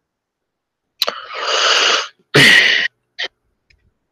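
A person sneezing: a breathy intake that grows louder about a second in, then one sharp, loud sneeze.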